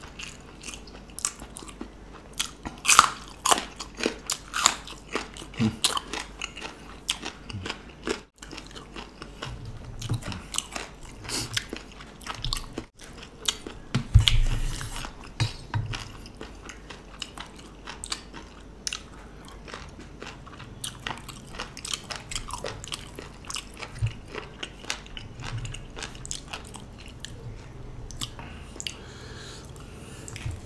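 Close-up chewing and crunching: a person eating raw vegetables such as bitter gourd and cucumber, with raw beef liver, with many irregular crisp crunches and wet mouth clicks. The loudest crunches come about three seconds and fourteen seconds in.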